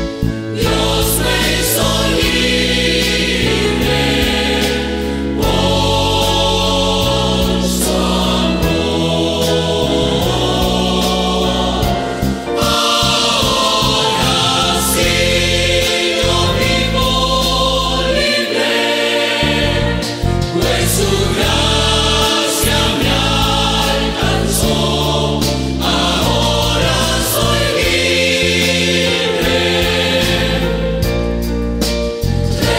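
Pentecostal church choir singing a Spanish-language hymn over instrumental accompaniment with a stepping bass line.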